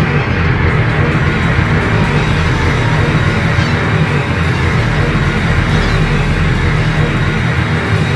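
Loud, dense instrumental thrash-metal jam that holds a steady level throughout, heavy in the low end.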